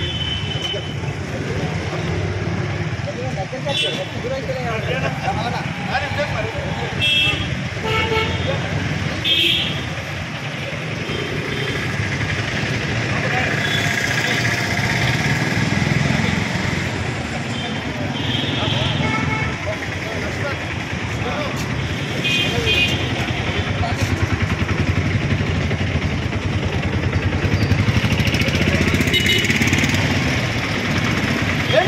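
Background chatter of a gathered group of people mixed with street traffic, with several short vehicle-horn toots scattered through.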